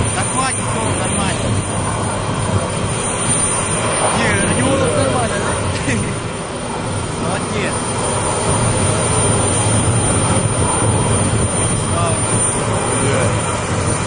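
Steady, loud rushing noise with faint, muffled voices now and then.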